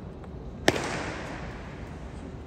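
A single sharp foot stamp (zhenjiao) from a Chen-style tai chi performer bringing a raised knee down onto a concrete floor, about two-thirds of a second in, with a long echo of about a second from a large hall.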